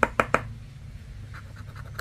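A scratcher chip scraping the coating off a scratch-off lottery ticket: four quick, sharp scrapes at the start, then a few fainter strokes about a second and a half in.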